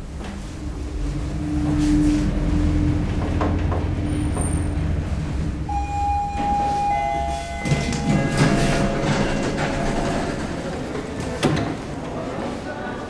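1972 Haushahn passenger elevator, modernized by Schindler, travelling with a low steady rumble and a hum. Near the middle a single steady tone sounds as the car arrives, and then the doors slide open with a clatter.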